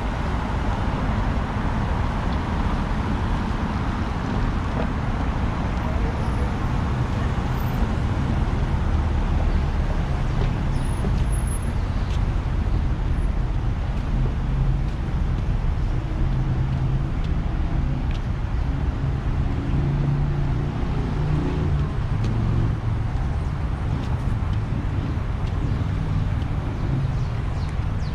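Steady road traffic on a wide city boulevard: cars passing with tyre and engine noise, and a low engine drone from vehicles close by in the second half.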